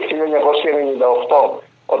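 Speech only: one voice heard over a telephone line, with a short pause near the end.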